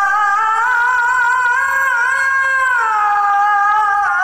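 A voice singing one long, loud note held with a slight waver, its pitch dropping about three seconds in.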